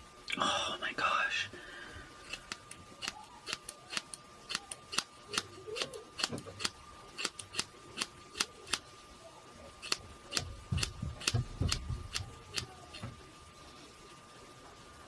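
Scissors snipping through locks of hair: dozens of crisp snips in quick runs, a few a second, as hair is cut off close to the head. Near the start there is a brief loud breathy sound, and some low thuds come late on.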